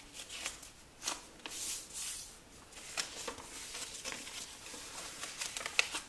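A square sheet of paper being folded corner to corner into a triangle and creased flat by hand: soft rustles and brushing strokes of fingers over the paper, with a sharper crackle near the end.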